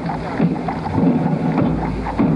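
Wind buffeting an outdoor microphone: a steady low rumble with irregular gusting.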